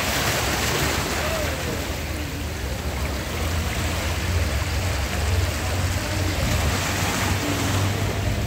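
Seawater washing over a shallow rocky shore: a steady rush of surf that swells and eases slightly, with a low rumble underneath.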